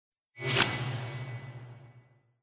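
Logo-reveal sound effect: a whoosh swells in about a third of a second in and peaks sharply. It leaves a low humming tail that fades away by the end.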